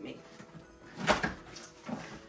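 Cardboard shipping box being opened by hand, its flaps handled, with one sharp cardboard knock about a second in.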